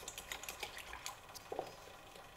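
Wire balloon whisk beating yogurt smooth in a glass bowl: quick, light clicks of the wires against the glass, several a second, thinning out in the second half.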